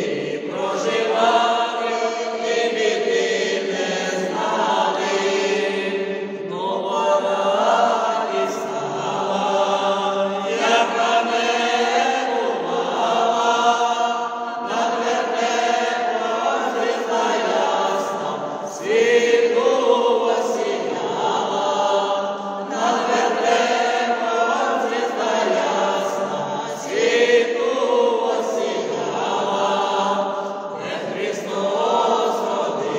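Mixed vocal ensemble of women and men singing a Ukrainian Christmas carol (koliadka) a cappella, in phrases of about four seconds each.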